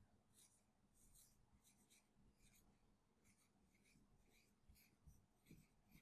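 Very faint squeaking strokes of a marker pen writing on a whiteboard, a string of short strokes about two a second as letters are written out.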